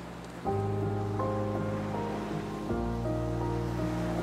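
Soft background music of long held chords over a low bass, moving to a new chord about half a second in and again just before three seconds, with a few higher notes on top. Beneath it runs a steady wash of water-sound effect.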